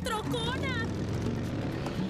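A cartoon crab character's voice for under a second, then a rushing whoosh that swells and fades, over steady background music.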